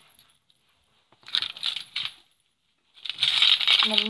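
A bunch of key rings and metal keychain clips jingling as they are handled, in two spells: one about a second in lasting about a second, and another starting near the end.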